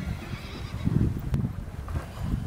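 A horse cantering on a sand arena: dull hoofbeats in the steady rhythm of the canter stride.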